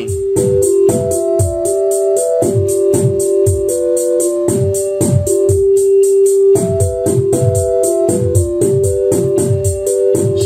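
Eurorack modular synthesizer patch playing: a Mutable Instruments Plaits voice holds sustained notes that step among a few fixed pitches in a random order set by Marbles, over a steady analog kick and snare beat with fast high ticks.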